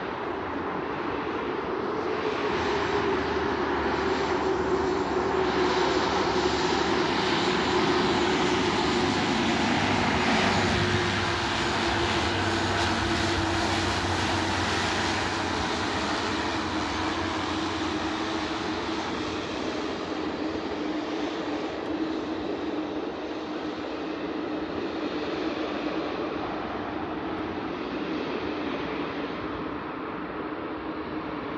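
Beechcraft King Air twin-turboprop engines running as the aircraft rolls along the runway. The drone grows louder as it approaches, and its hum drops in pitch as it passes, about ten to twelve seconds in, then slowly fades.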